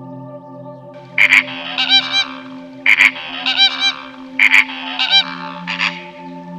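Flamingo honking: loud goose-like calls in about four clusters of two or three honks each, starting about a second in, over soft ambient music with held tones.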